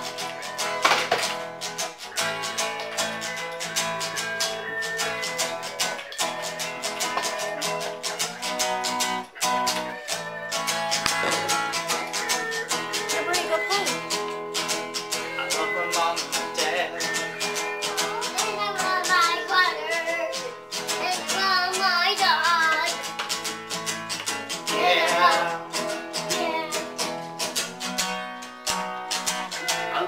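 Acoustic guitar strummed in a steady rhythm. In the second half a young child's singing voice joins in.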